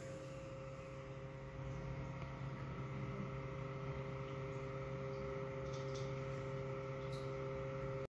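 Steady electrical hum of running reef-aquarium equipment, a little louder from about two seconds in, with a few faint ticks near the end.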